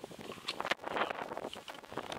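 Wind on the microphone with rustling from a handheld camera being moved, and a couple of sharp clicks about half a second in.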